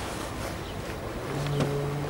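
TILO Stadler FLIRT electric multiple unit rolling slowly into the station, a steady rushing noise. About a second and a half in, a steady low hum with overtones joins, with a single click.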